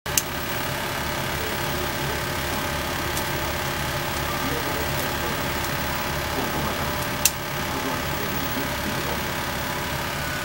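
A steady low mechanical hum with an even, repeating low throb, as from a small running motor, broken by two sharp clicks: one just after the start and one about seven seconds in.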